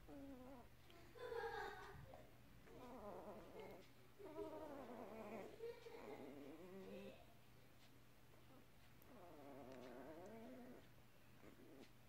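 Newborn puppies whimpering faintly: about six short, high squeaky whines, the last one longer, rising and then falling in pitch.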